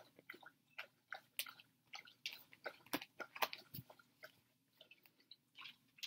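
A pet licking: a faint, irregular run of short smacking licks, several a second.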